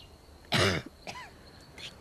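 A single cough about half a second in, short and harsh.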